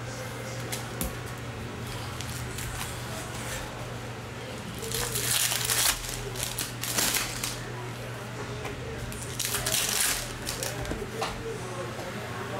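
Foil trading-card pack wrappers being torn open and crinkled, in two loud tearing bursts about five and ten seconds in, with smaller crinkles between, over a steady low hum.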